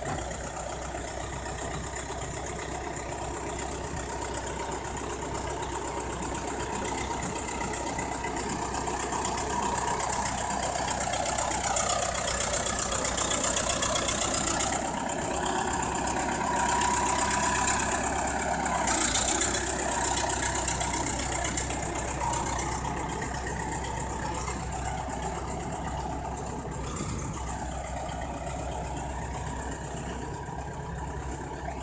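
Crawler bulldozer's diesel engine running under load as its blade pushes wet earth. The sound grows louder through the middle as the machine comes close, then eases back.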